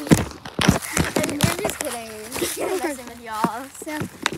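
Young people's voices talking indistinctly, with several sharp knocks and rustles from footsteps on dry leaf litter in the first second.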